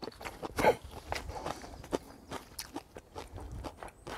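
Irregular light clicks and rustles: a puppy padding away over dry fallen leaves while chopsticks tap on a plate, with one brief louder sound just under a second in.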